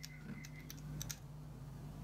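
Light clicks and taps of small aluminium model-engine parts being handled and fitted together by hand, a handful of sharp clicks in the first second, over a steady low hum.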